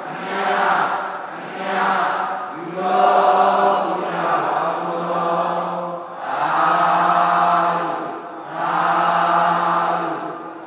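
A large group of voices chanting together in unison: short phrases on one steady pitch, each one to two seconds long with a brief break between them, repeated over and over.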